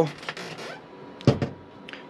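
Dometic motorhome fridge door being swung shut, closing with a single thump about a second and a quarter in.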